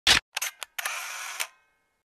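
Camera shutter sound effect: a loud sharp click, two smaller clicks, then a longer mechanical rattle that cuts off suddenly halfway through.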